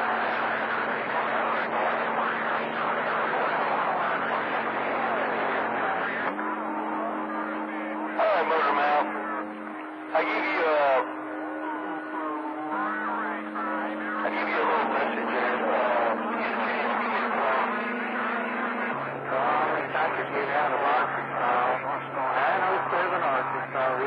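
CB radio receiver on channel 28 playing skip: distant stations' voices come through garbled and hard to make out, over steady low tones that change pitch about six seconds in and again near the end. Two short, louder bursts of sound break in around eight and ten seconds.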